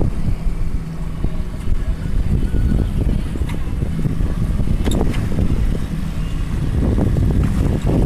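Wind buffeting the microphone over the steady low hum of a small boat's outboard motor, with a sharp click about five seconds in.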